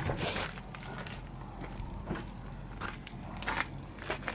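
Light metallic jingling and clicking, in scattered short bursts, mixed with knocks from handling the phone.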